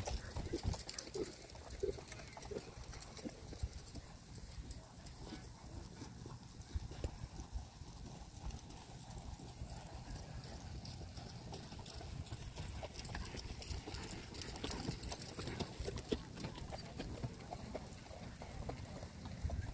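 Hooves of several horses clip-clopping irregularly on the soft dirt of a show arena as they move around it, over a steady low rumble.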